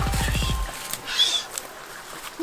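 Edited-in music or a comic sound effect: a rapid run of falling pitch sweeps that cuts off under a second in. After it comes a quieter stretch of outdoor background with a couple of short, high chirps.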